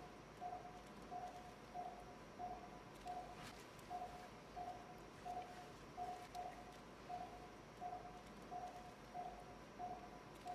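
Operating-room patient monitor giving its pulse beep, short steady beeps at one pitch, about three every two seconds, in time with the patient's heartbeat.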